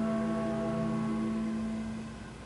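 Orchestra holding a sustained chord that fades away near the end.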